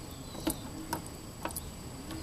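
Four short, sharp metallic clicks from a Dana 44 rear differential's spider gears as the axle is rocked back and forth, the last two close together. The gears clunk through play that the owner puts down to a loose or worn bearing around the cross pin.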